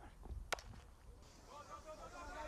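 Cricket bat hitting the ball: one sharp crack about half a second in.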